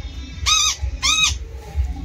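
A pet parrot gives two short, harsh calls about half a second apart, each rising and falling in pitch.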